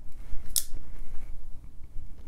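Brown Knives Exponent front-flipper folding knife flicked open: one sharp metallic click about half a second in as the blade swings out and locks, over light handling noise.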